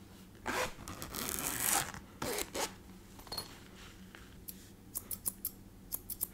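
A zipper on a case pulled open in three strokes, then steel grooming scissors lifted out with a brief high metallic ring and opened and shut several times, sharp clicks about five seconds in.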